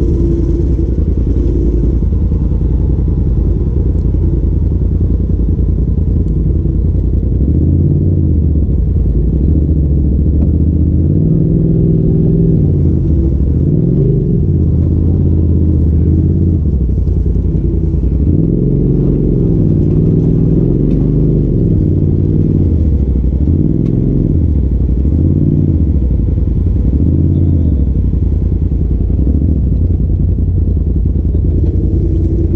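A Polaris RZR side-by-side's engine runs steadily at low revs. About a quarter of the way in, it starts revving up and down again and again, every second or two, as the machine crawls over rocks.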